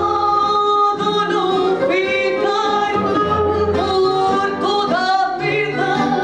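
A woman singing fado in long held notes that waver in pitch, accompanied by a plucked Portuguese guitar (guitarra portuguesa) and a classical guitar (viola).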